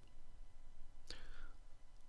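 A short intake of breath by the narrator about a second in, over a faint steady low hum of the recording.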